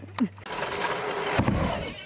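A short laugh, then a steady rushing noise from mountain bike tyres on a dirt jump line, with a low thud about one and a half seconds in.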